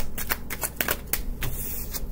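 A deck of oracle cards being shuffled by hand: a quick run of crisp card clicks, about eight a second, ending in a brief sliding hiss.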